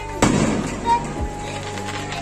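An aerial firework shell bursting with one loud bang about a fifth of a second in, its crackle trailing off quickly, over steady background music and voices.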